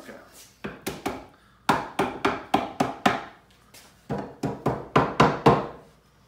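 Mallet blows knocking the finger-jointed pine boards of a wooden beehive box together, in three runs of quick sharp strikes about four a second.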